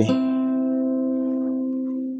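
Acoustic guitar strings plucked once and left ringing, the notes fading slowly.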